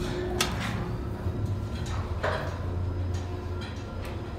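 1965 Otis traction elevator setting off after its basement button is pressed: a steady low hum from the drive, with a click about half a second in and a sharper clack a little after two seconds.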